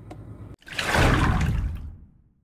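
A burst of loud rushing noise, about a second long, that cuts off suddenly, after a faint low rumble.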